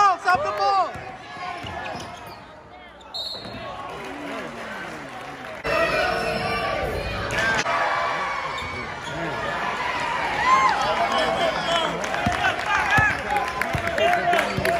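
Basketball game on a gym's hardwood floor: sneakers squeaking in short chirps and a basketball bouncing, with voices from the crowd and players. The sound drops away abruptly about three seconds in and jumps back up about six seconds in.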